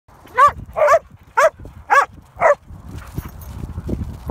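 A dog barking five times in quick succession, about two barks a second, in excited play. After the barks comes a softer patter of paws on snow.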